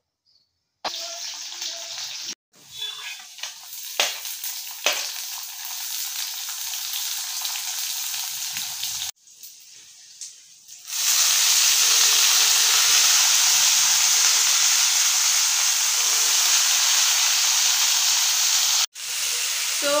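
Oil sizzling in a small kadhai on a gas stove as bathua greens are fried, with a couple of clicks of the spoon against the pan. From about eleven seconds in the sizzle is much louder and brighter, as the fresh greens go into the hot oil, and it stops abruptly near the end.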